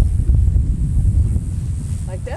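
Wind buffeting the microphone: a loud, low, fluttering rumble.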